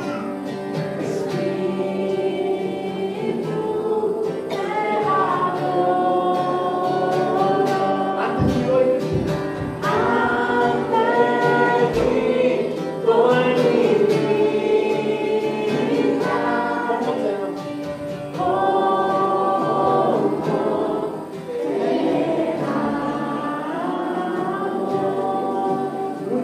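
A group of voices singing a Christian worship song together, in held, phrase-by-phrase lines.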